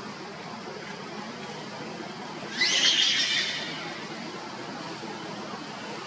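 A macaque gives a single shrill, wavering squeal lasting about a second, a little before the middle, over a steady background hiss.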